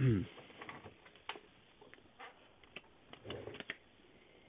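Hard plastic card holders being handled and sorted, giving a string of light, irregular clicks and taps, busiest near the end. A brief hum of voice opens it.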